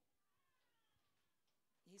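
Near silence: room tone, with a faint falling tone in the first second or so.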